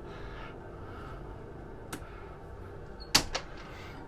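Steady low hum of the boat's onboard machinery, with a faint click about two seconds in and a sharper, louder click a little after three seconds.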